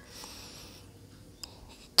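A quiet pause with a faint rustle in its first second, then a single soft click about a second and a half in.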